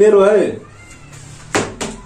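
A short, wavering vocal cry at the start. Then a partly filled plastic water bottle hits the table with two quick knocks about one and a half seconds in and ends up on its side: a missed bottle flip.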